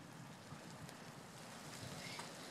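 Faint, steady outdoor background noise: a low even hiss with no distinct sounds standing out.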